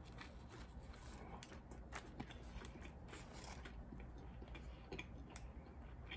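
Faint chewing of a mouthful of sub sandwich, with scattered small crisp clicks.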